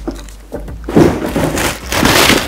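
Clear plastic packaging crinkling and a cardboard box scraping as a duffel bag is pulled out of its box. The crinkling starts suddenly about a second in and goes on loud and crackly.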